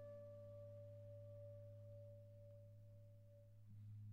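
Gold concert flute holding one soft, pure note that fades away and stops shortly before the end, over a low steady drone.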